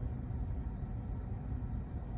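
Steady low rumble of background noise inside a car cabin, with no distinct events.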